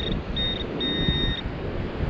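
A handheld metal-detecting pinpointer beeping in short pulses with a steady high tone, the last beep longer, as it sweeps a hole in beach sand and signals a metal target, here a ring. Wind rumbles on the microphone underneath.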